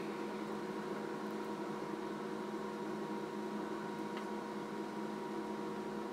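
Steady electrical hum, with several faint steady tones held over a light hiss, and one faint tick about four seconds in.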